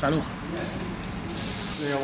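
A short, sharp hiss lasting about half a second near the end, over a steady low background noise.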